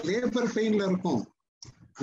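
A man speaking over a video call. His voice cuts off to dead silence about two-thirds of the way in.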